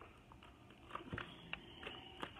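A deck of handwritten index cards shuffled by hand: faint, irregular soft clicks and taps as the cards slide and knock together.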